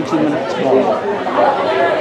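Several indistinct voices talking and calling over one another.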